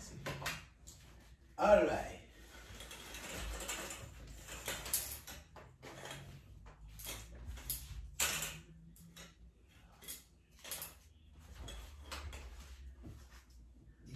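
Metal curtain grommets clicking and scraping along a metal curtain rod, with the rustle of sheer curtain fabric being handled, in short irregular bursts. A brief voice sound just under two seconds in is the loudest moment.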